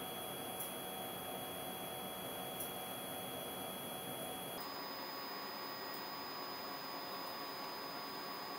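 Steady room noise in a lab: an even hiss with a faint high whine, and two faint clicks early on as a small camera is handled.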